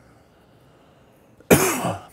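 A man coughs: one short, loud cough about one and a half seconds in.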